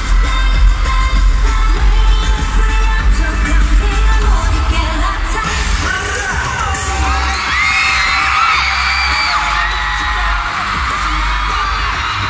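Live pop music with singing and a heavy bass beat, over a screaming arena crowd. About six seconds in the bass thins and the high-pitched screams and cheers of the fans come to the fore.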